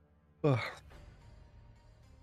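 A man's single short voiced exhale, falling in pitch, like a yawn with his hand over his mouth.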